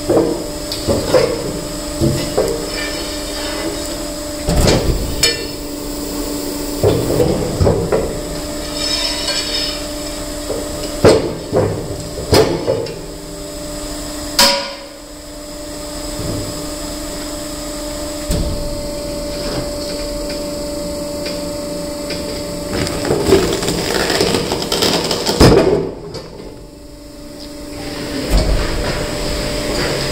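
Granite stones knocking and scraping on the steel table of a hydraulic stone splitter as they are shoved into place, with sharp knocks scattered throughout. Under them the machine hums steadily.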